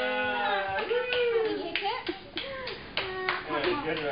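Voices in a room: a drawn-out vocal sound that ends about half a second in, then short rising-and-falling vocal sounds, with several sharp claps or taps between them.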